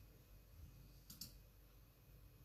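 Near silence: room tone with a faint double click about a second in.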